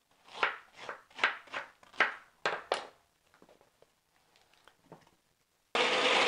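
Chef's knife cutting pineapple on a wooden chopping board: a quick run of about ten short cuts over two and a half seconds, then a pause. Near the end a kitchen mixer grinder starts suddenly and runs loud and steady, blending the pineapple.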